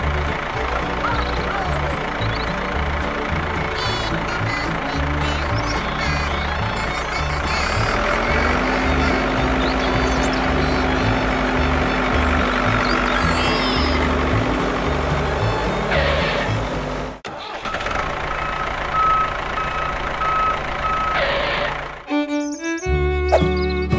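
A vehicle engine sound mixed with background music. Near the end comes an on-off beeping tone like a reversing alarm, and the sound cuts out briefly just before it.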